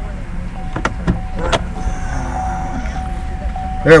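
Low steady rumble inside a stationary car's cabin, with a faint steady tone over it. Three sharp clicks come between about one and one and a half seconds in.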